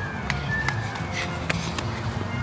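Walking footsteps and a few sharp handling knocks, over a steady background of distant music and crowd murmur.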